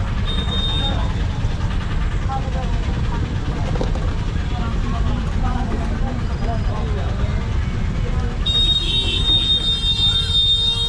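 Steady low rumble of street traffic with indistinct voices in the background; near the end a high-pitched steady tone sets in.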